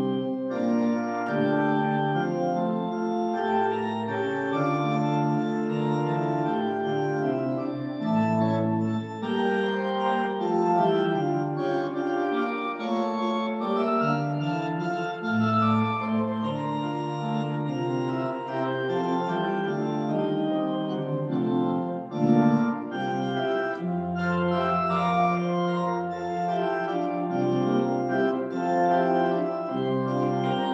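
Church organ playing a slow piece in sustained chords over held bass notes, the chords changing every second or so. A deep bass note is held for a few seconds near the end.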